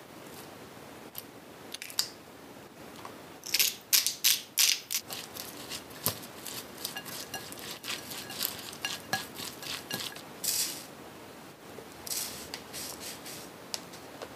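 Wooden chopsticks tossing shredded cabbage and carrot in a glass bowl, with a run of clicks and scrapes against the glass, densest about four seconds in.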